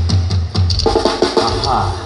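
Live banda music with drum kit hits and low tuba bass notes, played as the closing bars of a song. A voice is heard over the band near the end.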